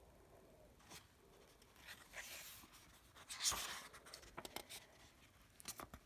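Faint paper rustling as the pages of a hardcover picture book are turned and handled: a few soft swishes, the loudest about three and a half seconds in, with small clicks of handling toward the end.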